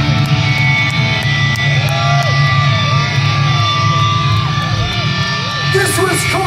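Industrial metal band playing live: distorted electric guitars holding a loud, droning chord over a heavy low end, with slow sliding, wavering tones above it.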